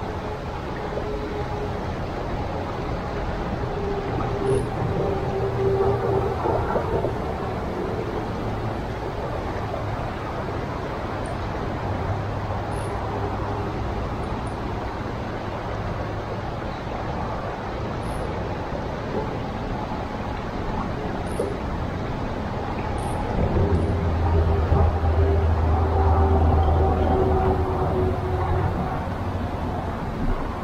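Steady rush of falling water from a small waterfall, with a low humming tone that swells about four seconds in and again near the end.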